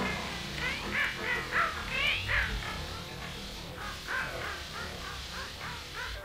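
Experimental electronic tape collage: a dense run of short crow-like calls, each sliding up and down in pitch, several a second and loudest in the first half, over a low rumble.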